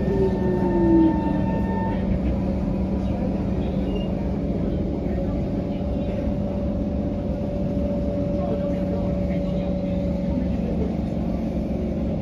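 Cabin noise inside an SMRT C151 metro train on the move: a steady rumble of wheels on rail under a low hum. A motor whine falls in pitch through the first second or so, higher tones stop about two seconds in, and a new steady whine comes in around five or six seconds.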